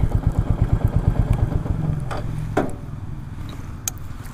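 Royal Enfield Meteor 350's single-cylinder engine running at low speed, with a steady low beat of firing pulses. It grows quieter over the second half.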